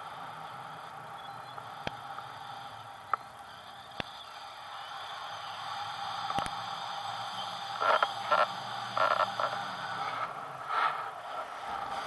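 Wind noise on an action camera held out in flight under a paraglider, muffled by the camera's housing, with a few sharp clicks. From about eight seconds in, it comes in louder, irregular gusts.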